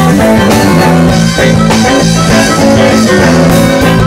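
Live band playing an instrumental passage: bowed fiddle and electric guitar over a steady bass line and drum kit.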